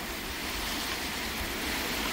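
Heavy rain and strong wind of a severe thunderstorm, a steady rushing noise that rises a little toward the end.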